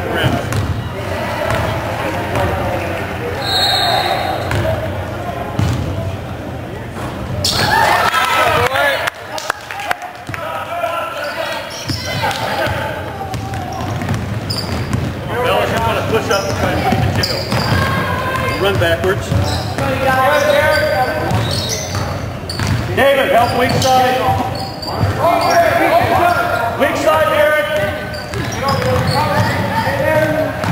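A basketball bouncing on a hardwood gym floor, with indistinct voices of players and spectators echoing in the hall.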